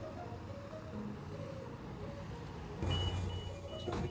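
Soft background music over faint street noise. About three seconds in, a city bus's engine rumble comes up with three short high electronic beeps.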